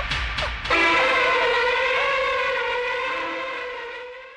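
Film soundtrack: one long, steady held tone, siren-like, that starts just under a second in and slowly fades out.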